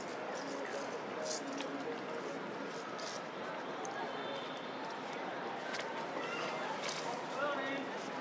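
Indistinct background speech with no clear words, over a steady outdoor hiss, with a few short high chirps and squeaks, the most noticeable near the end.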